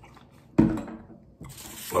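Water sloshing in a large plastic water jug as it is lowered after a drink. There is a sudden loud slosh about half a second in that dies away, then a softer rustle.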